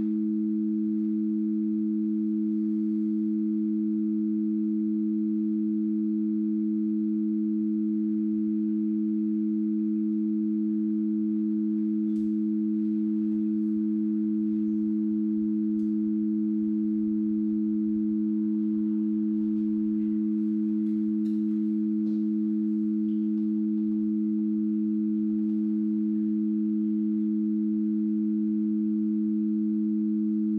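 Two steady electronic sine tones, close together in low pitch, held unchanged and sustained with no breaks, as part of an experimental music performance.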